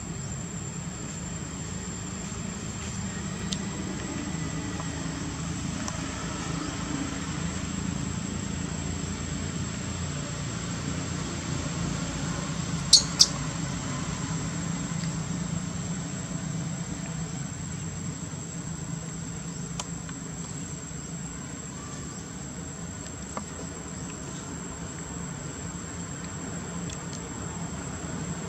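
Outdoor ambience: a steady, high-pitched insect drone, typical of crickets, over a low, even rumble. A pair of sharp clicks in quick succession about halfway through is the loudest thing heard.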